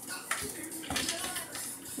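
Quiet kitchen handling: a kitchen knife drawn from a wooden knife block, with two light knocks, one shortly after the start and one about a second in.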